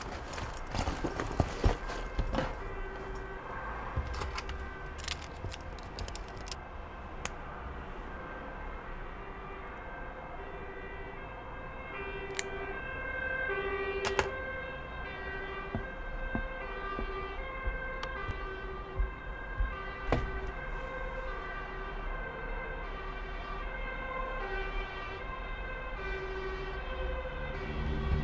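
Two-tone emergency siren alternating between two pitches about once a second, with a few knocks in the first seconds.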